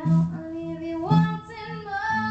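Live blues-rock band: a woman singing lead through a microphone, her voice moving between held notes, over electric guitar and band accompaniment.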